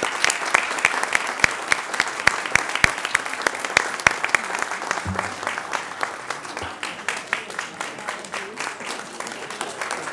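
Applause from a roomful of people, with dense hand claps, some close and sharp, easing off slightly in the second half.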